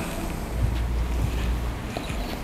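Low, steady rumble on the microphone, like wind or rubbing on the mic, with no speech over it.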